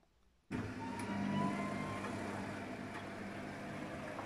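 Luxor WM 1042 front-loading washing machine's drum motor starting abruptly about half a second in, with a brief rising whine, then running steadily as it turns the drum through rinse water.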